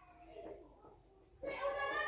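A high-pitched, wavering, drawn-out cry in the background, starting about one and a half seconds in.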